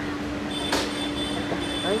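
Street background noise with a steady hum. A high steady whine comes in about half a second in, and a single sharp click follows soon after.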